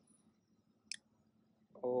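A single short, faint click about a second in: the Redmi K20 smartphone's camera shutter sound as a photo is taken with its pop-up front camera.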